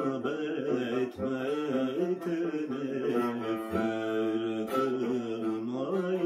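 A man singing a slow Turkish classical song in makam Acem, a melismatic line of long held notes that waver and turn in ornaments.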